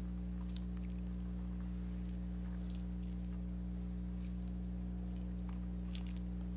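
Steady low electrical hum in the sound feed, made of several evenly spaced low tones, with a few faint scattered clicks.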